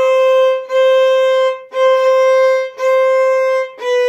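Violin played with the bow, slowly: five long notes at much the same pitch, about one bow stroke a second, with a short break between strokes.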